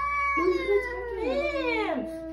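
Domestic cat yowling in long, drawn-out cries that waver and slide up and down in pitch: the hostile warning of a resident cat at a new cat in its home.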